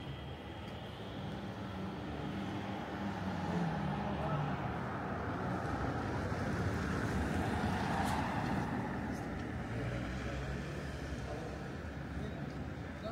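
Road traffic on a town street: passing vehicle noise that swells to its loudest around the middle and eases toward the end.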